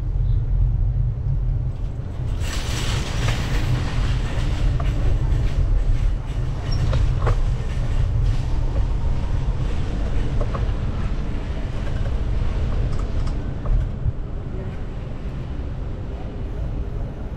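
Wind rumbling on the microphone of a camera riding on a moving bicycle, with the tyres rolling over concrete paving. A brief hiss rises and fades about two and a half seconds in.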